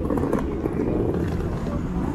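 Busy city walkway ambience: passers-by talking nearby, clearest in the first half second, over a steady low rumble of traffic.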